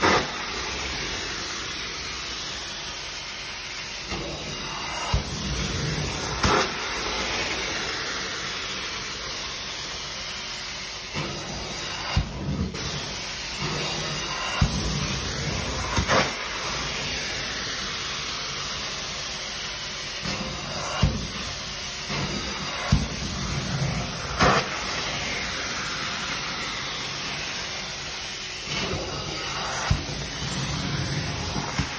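Carpet extraction stair tool spraying and sucking water back up through its vacuum hose as it is pushed across stair carpet: a steady hiss of suction. Short sharp knocks come every few seconds.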